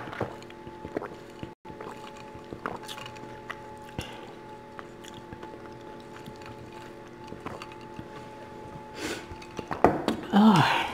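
Quiet sipping and swallowing of a drink through a plastic straw, with small clicks of lips and straw and a louder breath or slurp about nine seconds in.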